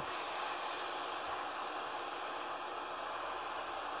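Steady background hiss with no distinct events, the same noise that lies under the narration.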